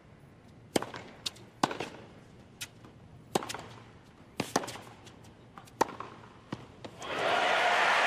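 Tennis ball struck by rackets in a baseline rally, with sharp pops about a second apart and a few fainter bounces between them. About seven seconds in, a stadium crowd breaks into loud cheering and applause as the point is won.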